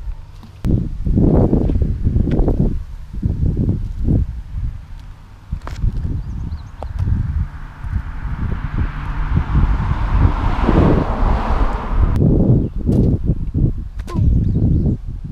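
Wind buffeting the camera microphone in gusts, a heavy uneven rumble. A rushing hiss swells through the middle and cuts off about two seconds before the end.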